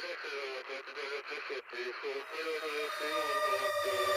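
A person's voice over an intro, with held music tones building up through the second half and a low rumble coming in about three seconds in.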